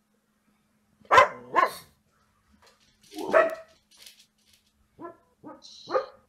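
A dog barking: two sharp barks close together about a second in, a third about two seconds later, and a few quieter barks near the end.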